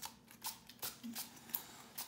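Makeup setting spray pumped onto the face from a small pump bottle: about six short spritzes in quick succession, roughly three a second.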